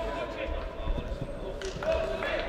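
Soccer players shouting to each other on the pitch, with a few dull thuds of the ball being kicked, echoing in a large indoor sports hall.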